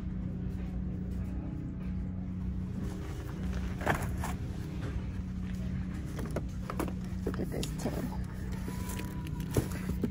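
Retail store ambience: a steady low hum with a few scattered clicks and knocks, the sharpest one near the end.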